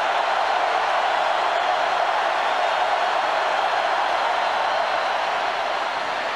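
Stadium crowd noise: a steady wash of many voices from a large football crowd, easing slightly near the end.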